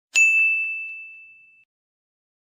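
A single bright ding, an intro sound effect: one sharp strike that rings on a single high tone and fades out over about a second and a half, with a couple of faint repeated taps just after the strike.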